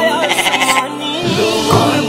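A single quavering sheep's bleat lasting most of the first second, laid over the naat's background music, which goes on with low drum beats.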